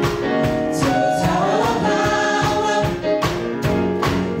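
Gospel praise team of five singers singing in harmony into microphones, backed by keyboards and drums keeping a steady beat.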